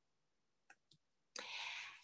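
Near silence with two faint clicks about two-thirds of a second apart, then a soft breathy hiss of a speaker drawing breath in the last half-second before talking.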